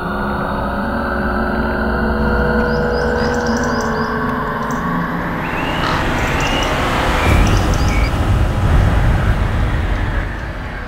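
Dark, suspenseful film score: a sustained low rumbling drone with held tones, growing louder in the last few seconds.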